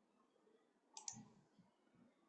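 Near silence, with one brief faint click about a second in.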